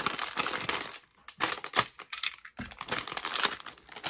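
Crinkling of a LEGO minifigure foil blind bag as it is handled and cut open with a box knife, in three irregular stretches of crackle with two short pauses.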